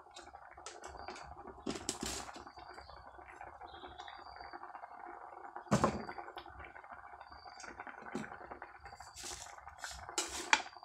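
Kitchen handling sounds: a few clinks and knocks of utensils and dishes over a steady low hiss, with the loudest knock about six seconds in.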